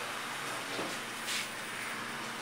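Steady indoor room noise with a low hiss, and a faint brief rustle about a second and a half in.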